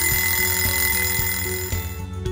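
A steady high electronic alarm tone sounding, marking that the 100-second time limit has run out, and stopping just before the end.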